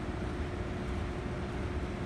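Steady background hum and hiss of room ventilation, with a faint steady tone running through it.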